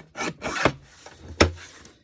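Guillotine paper trimmer's blade arm shearing through cardstock in a few short rasping strokes, followed by a single sharp knock about one and a half seconds in.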